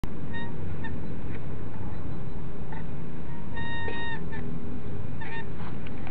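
Several short honking calls and one longer, level-pitched honk midway, over a steady low rumble.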